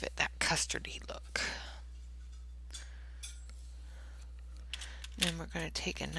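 A woman's voice: a few short sounds in the first second and a half, then speaking again about five seconds in, over a steady low hum.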